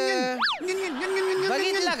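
A man singing in long held notes with short dips between them, with a quick boing-like rise and fall in pitch about half a second in.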